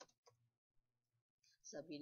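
A few faint, sharp clicks of computer keys and a mouse as a password is typed and a login button clicked. A voice starts speaking near the end.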